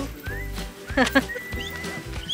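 Background music over the low rumble of a car's cabin on the move, with a short whinny-like cry about a second in and a held high whistle-like tone near the end.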